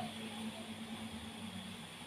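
Quiet, steady background hum and hiss, like room tone; the low hum fades down near the end.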